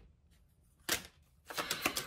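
Tarot cards being handled: a single sharp snap of a card about a second in, then a quick run of clicking card sounds near the end as the next card is drawn from the deck.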